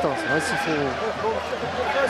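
Men's voices talking, with no other distinct sound standing out.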